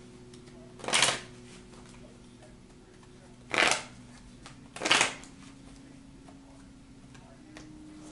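A tarot deck being shuffled by hand: three short bursts of card noise, about a second in, then twice more near the middle.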